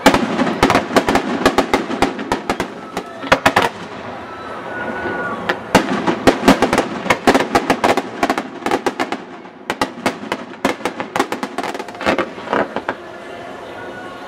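Fireworks display: rapid volleys of sharp bangs in dense clusters, with a short lull about four seconds in and the bursts thinning out toward the end.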